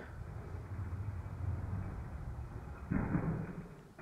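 A low, steady rumbling room noise, then about three seconds in a short, louder clatter as a die-cast toy monster truck runs down a plastic track and crashes into a row of toy cars.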